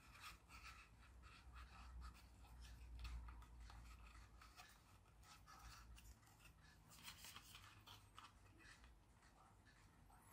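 Faint handling sounds: a soft rubber suction cup being squeezed and pushed into a hole in a plastic thermometer body, with small scattered rubs and clicks.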